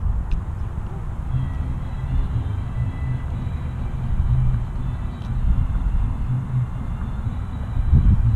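Wind buffeting the microphone outdoors: an uneven low rumble that swells and dips.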